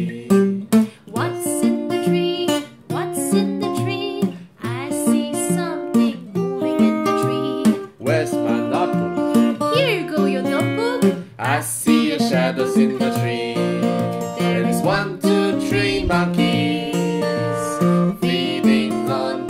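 Children's sing-along song with strummed plucked strings and sung verses.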